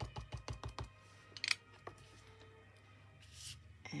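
Small ink pad dabbed rapidly against a clear rubber stamp to ink it, about six quick light taps a second, stopping about a second in. A couple of faint clicks and a brief soft rustle follow.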